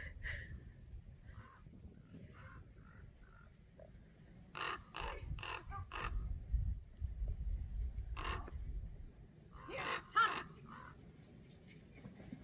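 Small dog's short, sharp barks in quick groups of several, with a distant shout of 'here' near the end and wind rumble on the microphone.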